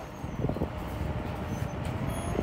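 Holmes Tropicool desk fan running with a steady whir of moving air, pretty quiet.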